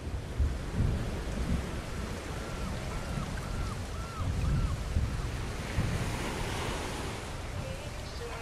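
Ocean surf washing and surging, with a faint string of short rising-and-falling tones about two to four seconds in. A melody begins just before the end.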